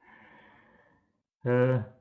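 A soft breath or sigh from a man, faint and brief, followed by a short pause; his speech resumes about a second and a half in.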